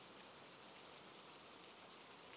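Near silence with a faint, steady hiss of rain.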